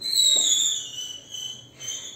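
A loud, high-pitched whistling squeal that slides slowly down in pitch over about a second and a half, then a shorter one near the end.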